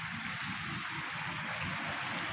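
Steady rush and splash of water falling from a fountain's jets.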